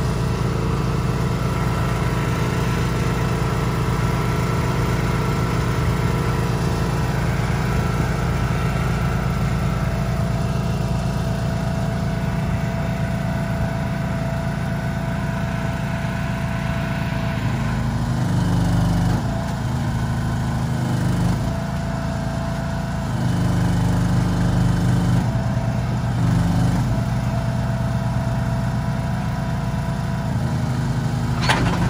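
Engine of a shed-moving truck and hydraulic trailer rig running steadily, speeding up and dropping back several times in the second half as the shed is moved.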